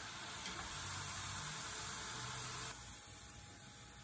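Vegetable oil sizzling steadily in a wok as lotus root slices deep-fry to golden and crisp. About three seconds in, the sizzle drops to a quieter level.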